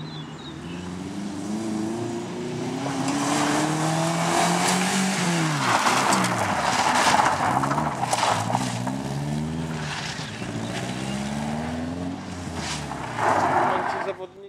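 Subaru Impreza rally car's flat-four engine revving hard, its pitch climbing and dropping repeatedly as it accelerates and shifts, with loose gravel spraying from the tyres as it slides through a corner.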